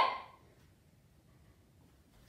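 The tail of a boy's short, loud shout, a karate kiai on a strike, dying away in the first half-second, followed by near-silent room tone.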